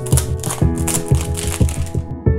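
Clear cellophane wrapping crackling and crinkling as it is torn and peeled off a small cardboard fragrance box. This stops near the end, over background music with a steady beat.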